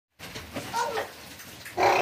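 A dog whining: a short faint call, then a louder drawn-out one that falls slightly near the end.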